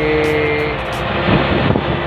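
Fishing boat's engine running steadily under way, with music playing underneath.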